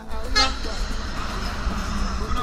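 A heavy semi-trailer truck passes close by on the road, with a steady low rumble and a rush of engine and tyre noise. A brief rising sound comes about half a second in.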